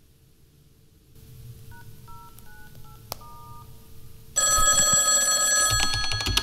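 Telephone keypad tones: about five short two-note beeps as a number is dialled. Then, about two-thirds of the way through, a telephone starts ringing loudly and keeps ringing.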